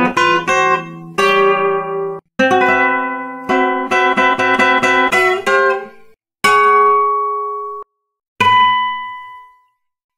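Solo classical guitar playing modern, atonal music: quick runs of plucked notes broken by short pauses, then two held chords in the last few seconds. The first chord is damped off and the second rings away to silence.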